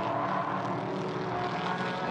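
Engines of several GT4 race cars running in a close pack at speed, a steady multi-toned drone with a slight shift in pitch midway.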